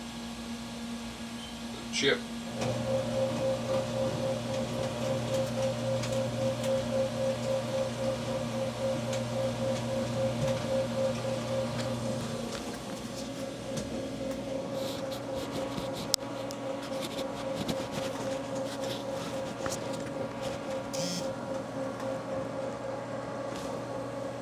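Chip auger in a Haas VF-2SS machining center, its gear motor starting a couple of seconds in and running with a steady hum that pulses about twice a second as the screw turns. The tone of the hum shifts about halfway through.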